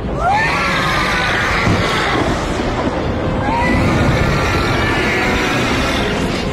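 Film soundtrack: people screaming, with short rising shrieks about a third of a second in and again midway, over music and a low rumble.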